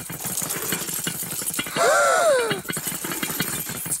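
Fast, continuous rattling: a cartoon sound effect of a ladybird being shaken upside down to get swallowed car keys out. A short whining cry rises and falls about two seconds in.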